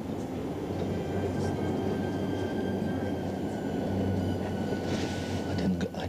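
A steady low rumble with a faint high whine held over it, from something heavy and mechanical running continuously.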